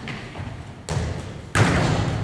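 A basketball thudding on a hardwood gym floor twice, about a second in and louder near the end, each bounce leaving a long echo in the hall.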